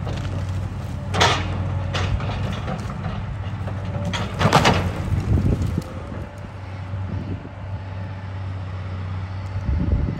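Volvo tracked excavator's diesel engine running under load as its arm pushes against a standing tree, with sharp wood cracks and snaps about a second in, at two seconds, and loudest in a cluster near four and a half seconds.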